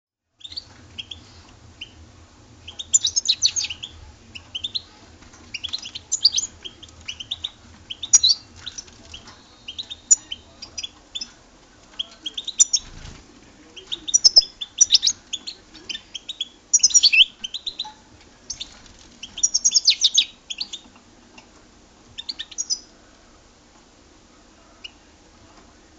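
European goldfinch song: phrases of rapid high twittering chirps come one after another, some louder than others, with short gaps between them. They stop shortly before the end. A faint low hum runs under the first half, and there is a single low thump about halfway through.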